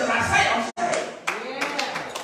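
A man's preaching voice, then a run of hand claps through the second half with the voice carrying on under them; the sound drops out for an instant just before the claps begin.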